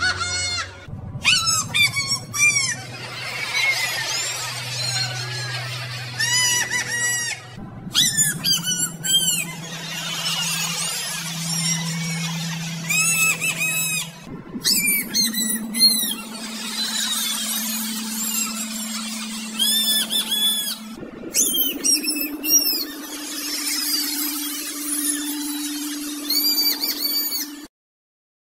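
Voldemort's cackling laugh, looped over and over and pitch-shifted higher and higher until it is a very high, squeaky string of short cackles. Under it a steady low hum steps up in pitch about four times. It all cuts off abruptly just before the end.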